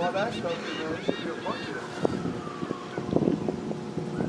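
Distant, unclear voices outdoors, with a long tone that slowly falls in pitch through the middle.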